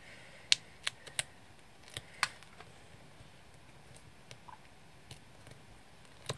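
Small, sharp clicks of fingers handling foam adhesive dimensionals on a cardstock label, peeling off their backing and pressing them down. Five clicks come in the first two and a half seconds, then only faint ticks.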